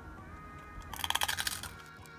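A bite into a crisp chip: a quick run of crunching crackles lasting under a second, about a second in, over faint background music.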